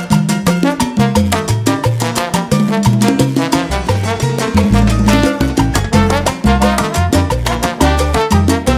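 Salsa music: a band playing an instrumental passage without singing, with a moving bass line under steady percussion.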